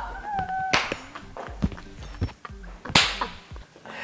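Two women's laughter dying away: a thin, high-pitched laugh at first, then quiet breathy laughter broken by two sharp smacks, about a second in and about three seconds in.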